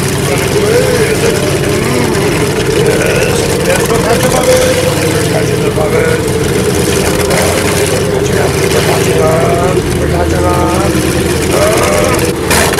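Tracked snowcoach's engine running steadily as it drives through blowing snow, under a haze of wind noise, with voices over it now and then.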